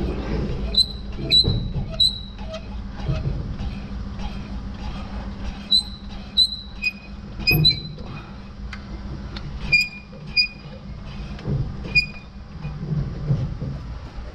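Trailer tongue jack being cranked up by hand. It gives short high squeaks in runs about half a second apart, with a few pauses, over a steady low hum.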